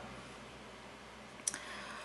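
Quiet room tone with a single short, sharp click about one and a half seconds in, from makeup things being handled as a handheld makeup mirror is picked up.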